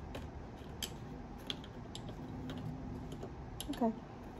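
Faint, scattered light clicks and taps of long fingernails against banknotes and a plastic cash organizer as fingers search through stacked bills.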